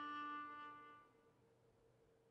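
A held viola note dying away over about a second, then near silence.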